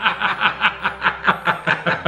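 Two men laughing together, a quick steady run of ha-ha sounds about five a second.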